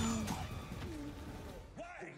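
Soundtrack of a TV drama playing back: a dense mix of sound effects and score with a few short pitched sounds, then a man's voice speaking dialogue near the end.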